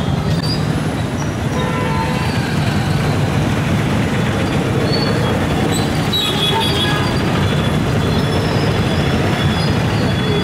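Steady, loud street traffic noise: vehicles running past on a busy town road, with a few brief faint high tones.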